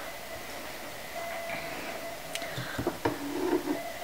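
Quiet room hiss with a few faint clicks and knocks in the second half from a painted wooden clothes hanger being handled and lifted.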